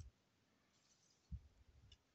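Near silence with faint handling of trading cards: one soft low thump about a second and a half in, then a few faint ticks near the end.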